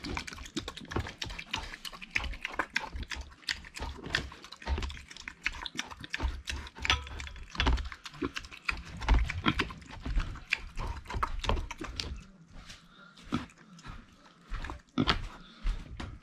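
Micro pig snuffling and licking at a stainless-steel bowl: a dense run of wet clicks with low thuds, thinning out a few seconds before the end.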